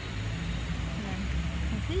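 Steady low rumble of road traffic, with a continuous engine hum underneath.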